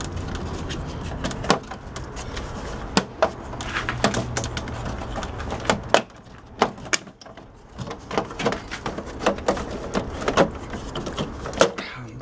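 Scattered plastic clicks and knocks as hands work at a television's plastic back casing and power cord, over a low rumble that drops away about six seconds in.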